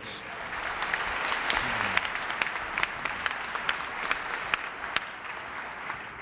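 Large dinner audience applauding, a dense patter of claps that dies down near the end.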